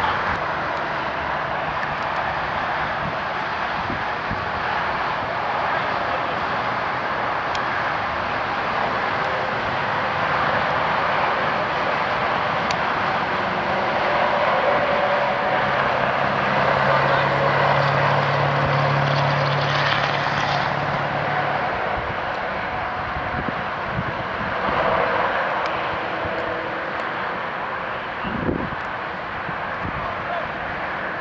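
Steady outdoor traffic noise with the drone of a passing engine that swells and fades about halfway through.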